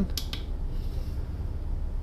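Two faint, quick clicks as a finger presses the buttons of a NextLight Pro Series grow-light controller, over a steady low background hum.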